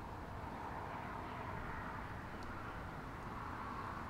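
Steady background noise with no distinct events, outdoor ambience coming through an open garage, with one faint tick about halfway.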